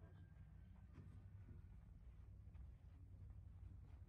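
Near silence: a faint low steady rumble, with a faint click about a second in.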